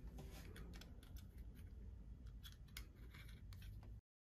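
Faint, irregular small clicks and rubbing of a plastic thermostat wall plate being handled against the wall, over a low room hum.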